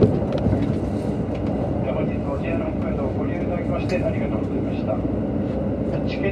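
Cabin running noise of a JR Hokkaido KiHa 183 series diesel express train in motion: a steady rumble of the engine and wheels on the rails, with a few light clicks.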